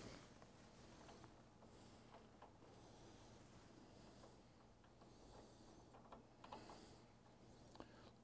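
Near silence, with faint small clicks and rubs of the compression valve pack being fitted into the base of a QA1 MOD Series coilover shock.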